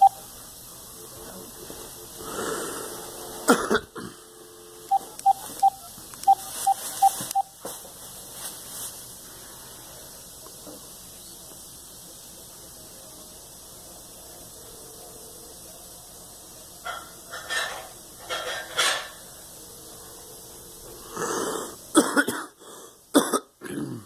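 A person coughing and clearing their throat now and then. A quick run of short electronic beeps comes about five seconds in.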